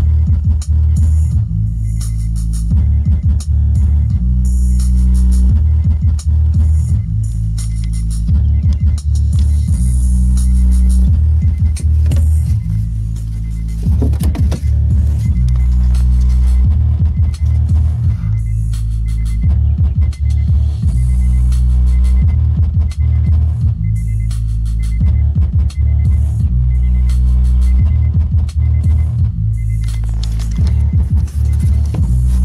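Bass-heavy electronic music with a repeating beat, played loud on a car stereo through new JVC CS-V6937 oval rear-deck speakers.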